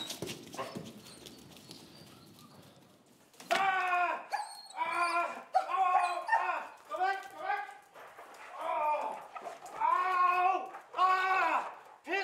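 A man crying out over and over in loud, drawn-out, rising-and-falling yells, roughly one a second, beginning about three and a half seconds in, as a police dog searches for him and bites his arm. The first few seconds are quiet apart from a sharp knock at the very start.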